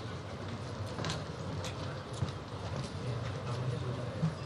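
Quiet room tone of a large assembly chamber: a low, uneven murmur of a seated audience, with a few scattered light clicks and taps.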